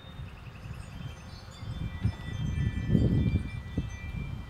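Wind buffeting the microphone outdoors: an uneven low rumble that gusts up to its loudest about three seconds in, then eases. Quick high chirps early on and thin high tones later sound above it.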